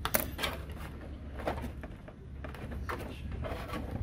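Plastic back cover of an all-in-one PC being pried at the edge with a thin metal opening tool: a few scattered clicks and scrapes, the sharpest right at the start.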